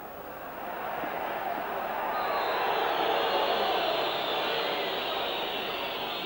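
Football stadium crowd, a broad roar that swells over the first few seconds and then slowly eases off.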